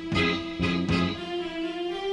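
Small live band playing a tango instrumental led by trumpet, with saxophone, keyboard, electric guitar and drums. A long held melody note sounds over a few accented, rhythmic chord strokes.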